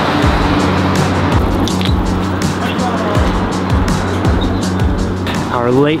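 Background music over steady street traffic noise, with a man starting to speak near the end.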